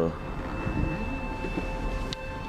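Steady low rumble of a car's engine and tyres, heard from inside the cabin while driving slowly, with a faint thin steady high tone above it.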